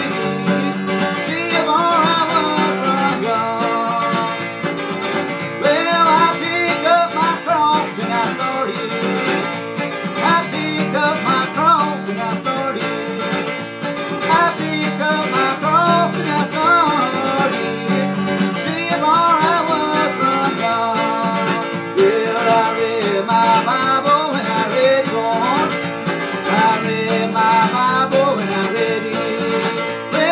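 A man singing while strumming chords on an acoustic guitar fitted with a capo.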